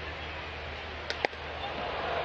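Steady ballpark crowd murmur, with a sharp pop a little over a second in as a 96 mph four-seam fastball smacks into the catcher's mitt.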